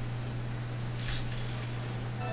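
Steady low hum with a brief soft hiss about a second in.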